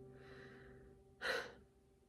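The last notes of an acoustic guitar chord fade out. About a second in, the singer takes one quick, sharp breath in.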